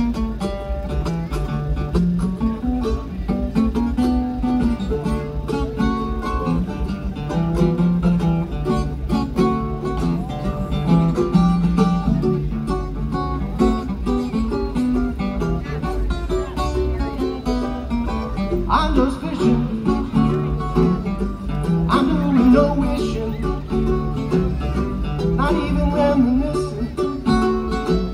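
Acoustic guitar and mandolin playing an instrumental country-bluegrass lead-in, with no singing. About two-thirds of the way through, the playing turns brighter and higher.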